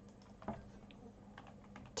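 A few faint computer-keyboard keystrokes, one about half a second in and several more in the second half, over a faint steady hum.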